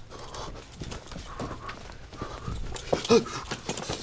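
Office background ambience: steady room tone with faint voices, scattered clicks and knocks, and a short rising-and-falling squeak about three seconds in.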